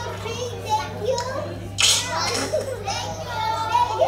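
Several young children's voices talking and calling out over one another, with a steady low hum underneath.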